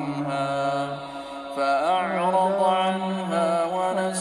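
A man's voice reciting the Quran in melodic tajweed chant. He holds one long vowel steady for about a second, then moves through an ornamented phrase that glides up in pitch.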